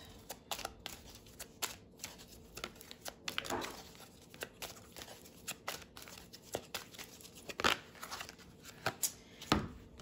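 A deck of oracle cards being shuffled by hand: a quick, irregular run of soft card clicks and slaps, with a few louder snaps toward the end.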